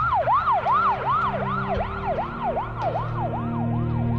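Ambulance siren in a fast yelp, its pitch sweeping up and down about three times a second and growing fainter toward the end, over a low steady drone.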